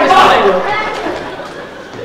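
Voices talking in a large hall, loud at first and then trailing off.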